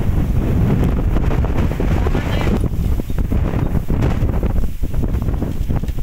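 Wind buffeting the microphone: a loud, uneven low rumble throughout, with a brief faint voice about two seconds in.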